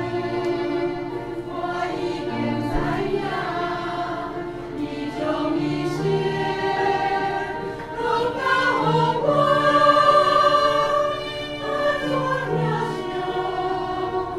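Mixed church choir singing a hymn in parts, the voices swelling loudest a little past the middle.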